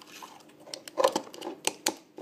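A quick run of small plastic clicks and knocks as a charger plug is fitted into its adapter, busiest in the second half.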